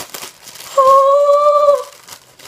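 A girl's held, high-pitched "ooh" lasting about a second, starting near the middle, over the faint crinkle of a plastic bag being opened.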